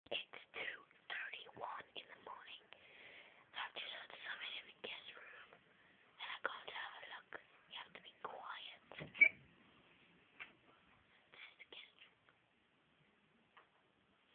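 A person whispering in short breathy phrases, with one brief sharp click about two-thirds of the way through; the whispering trails off near the end.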